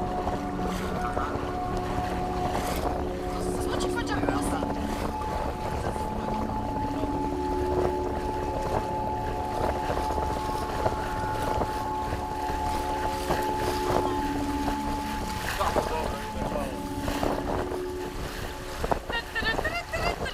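Wind on the microphone and water rushing past the hull of a small electric boat under way, with a steady hum of several held tones that come and go.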